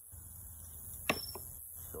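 A thrown metal washer landing with one sharp clack about halfway through, followed by a fainter tap. It falls short of the box cup.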